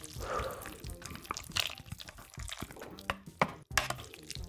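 Wooden chopsticks stirring and lifting ramen noodles in hot broth in a stainless steel pot: wet sloshing and dripping, with scattered sharp clicks.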